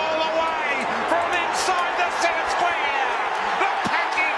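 Television commentator's voice over the noise of a stadium crowd at an Australian rules football match.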